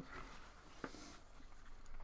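Quiet room tone with a faint hiss and a single light click a little under a second in.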